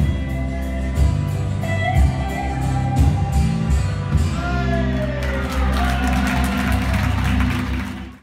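A live band playing: bass guitar, electric and acoustic guitars and drums, with gliding melody lines over the top and cymbals growing louder in the second half.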